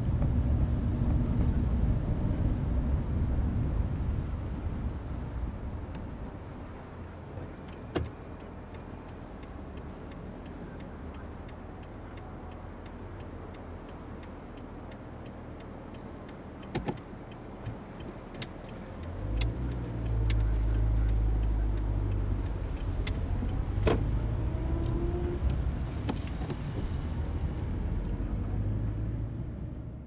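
Road traffic ambience: a low rumble of cars that thins out after the first few seconds, with a few sharp clicks and knocks. About two-thirds of the way through, a louder vehicle rumble swells, then the sound fades out at the end.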